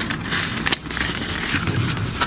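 Rustling and scraping of a patterned cardboard card being handled and a sticker rubbed on to seal it shut, with a few sharp crackles.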